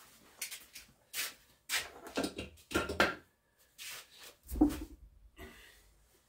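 A person moving about close by: a run of short, irregular rustles and knocks, the heaviest a low thump about four and a half seconds in.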